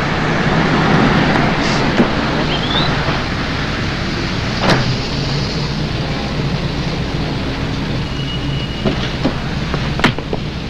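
Steady hum of road traffic, broken by a few short knocks and clicks from scuffling at a car door.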